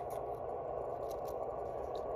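A few faint small clicks and scrapes of fingers handling and threading a small screw into the metal rear panel of a portable radio, over a steady background hum.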